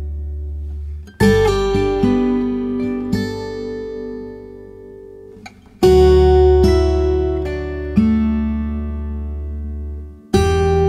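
Acoustic guitar music: chords struck and left to ring and fade, with a fresh chord every few seconds.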